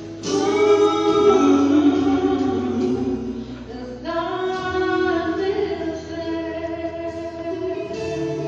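A small vocal group singing a song in harmony, with long held notes. New phrases start about a quarter second in and again about four seconds in.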